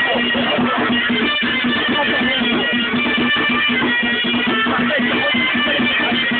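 Live folk music played continuously: plucked string instruments over a steady low drone, with a dense running rhythm.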